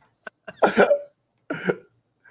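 A woman laughing in a few short, breathy bursts. The longest comes about half a second in, and another near the end.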